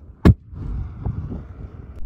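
A balloon filled with hydrogen gas explodes with one sharp bang about a quarter second in as a flaming torch ignites it, followed by a low rushing noise.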